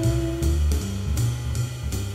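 Jazz blues played by a small band: a held note ends about half a second in, while bass and drums with cymbal strokes keep the beat.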